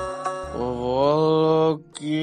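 Background music: a couple of plucked-string notes, then a long chant-like held note that glides upward and holds, breaking off just before the end.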